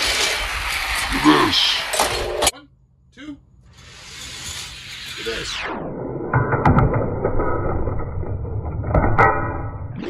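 Die-cast Hot Wheels cars rolling fast down a plastic drag track, a steady rushing rumble that breaks off briefly about two and a half seconds in. In the second half it turns into a duller rumble with scattered clicks and clatter as the cars run toward the finish gate.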